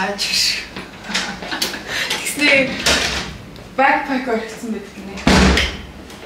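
A hard-shell suitcase being handled on a wooden floor: scattered clicks and knocks, then one heavy thump about five seconds in.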